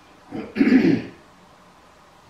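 A man clearing his throat: a short catch, then a louder rasping clear about half a second in.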